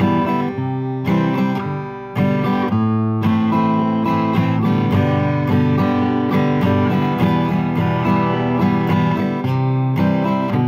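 Acoustic guitar strumming a verse chord progression in the key of G, with a fresh chord struck about two seconds in after a short decaying one.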